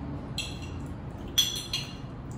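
Cutlery clinking against a dish three times, with a short ring after each; the sharpest and loudest clink comes about a second and a half in.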